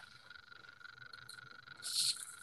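Faint, steady high-pitched chorus of tree frogs, heard through a video-call microphone.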